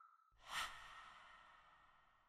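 Logo-animation sound effect: a soft whoosh that swells about half a second in and then fades away, over the dying tail of a faint ringing tone.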